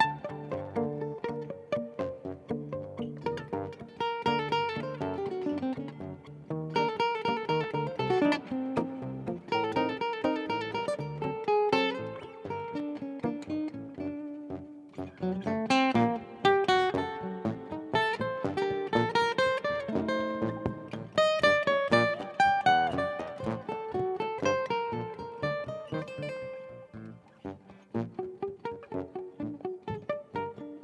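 Live duet of an acoustic guitar and a fretless acoustic guitar playing an Ottoman Turkish composition, with plucked melody lines, chords and fast runs.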